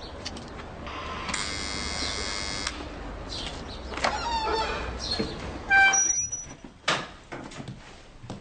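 An electric buzz lasting about a second and a half, a few short squeaks, then a brief ringing chime about six seconds in, the loudest sound here, followed by a knock.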